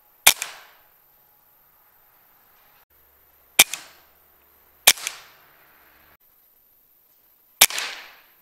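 Four PCP air rifle shots, each a sharp crack followed a split second later by a smaller knock and a short fade. The shots come about three seconds, then one second, then nearly three seconds apart.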